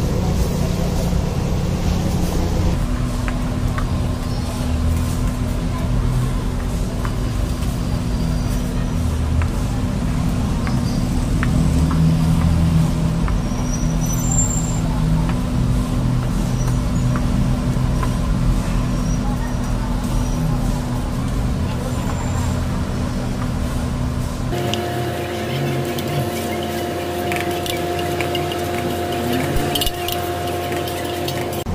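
Busy street-stall ambience: a steady low rumble and hum with background voices, and a metal spatula scraping and clinking on a large flat griddle of chole. The hum changes pitch abruptly near the end.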